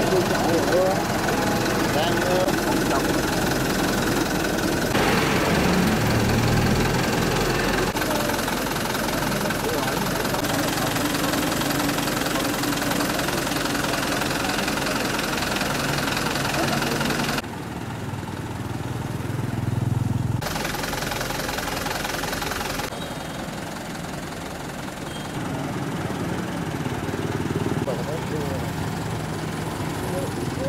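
Street noise at night: a vehicle engine running steadily, with people talking in the background. The sound changes abruptly several times, at cuts between clips.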